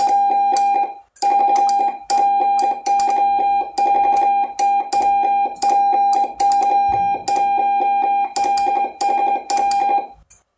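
Morse code (CW) tone from a President amateur radio transceiver's speaker: a single steady note keyed on and off in dots and dashes, with a short break about a second in.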